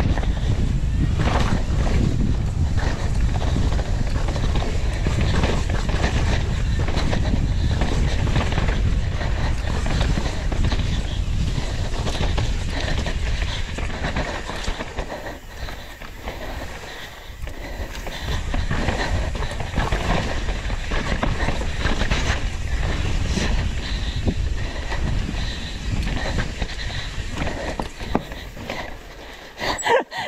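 Downhill mountain bike ridden fast down a rough dirt trail, heard from a camera on the rider: a constant rumble of wind and tyres on dirt, with rapid knocks and rattles of the bike over roots and bumps. It eases for a few seconds about halfway through.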